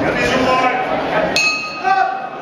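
Boxing ring bell struck about a second and a half in, ringing on with several clear high tones over crowd voices: the bell ending the round.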